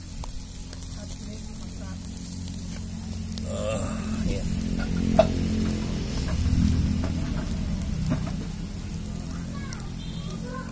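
Chicken sizzling on a charcoal grill while metal tongs turn the pieces, with a sharp click about five seconds in. A steady low hum runs underneath.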